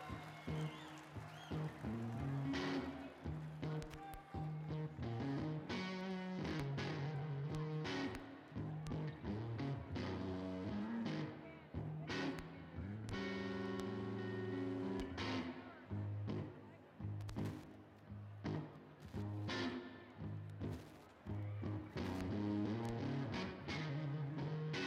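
Live band music led by electric guitar, with bass notes and drum hits.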